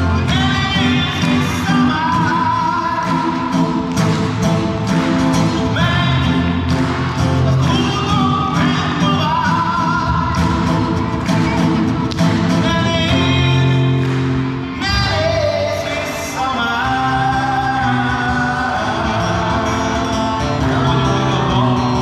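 A live song: a singer with guitar accompaniment, amplified through loudspeakers in a large hall. The sung melody wavers with vibrato over steady low notes and plucked strings, without a break.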